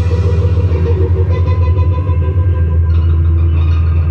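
Live band playing amplified in a small room: an electric bass guitar dominates with a loud, fast-pulsing low line under a sustained electric guitar drone, and no drums.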